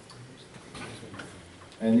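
A few faint, light clicks in a quiet room, then a man starts speaking near the end.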